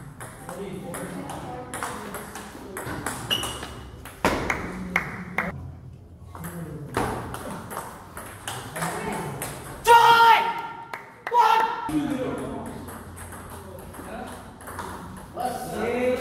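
Table tennis rally: the ball clicking off bats and table in quick exchanges, with voices in the hall and a loud shout about ten seconds in.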